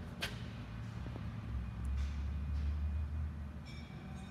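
Urschel E Translicer transverse slicer running while it slices carrots into coin cuts: a steady low mechanical hum, with one sharp click about a quarter second in.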